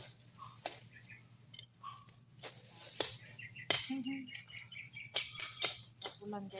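Leafy weed vines rustling and stems snapping as they are pulled up by hand: irregular sharp cracks and rustles, a few of them loud.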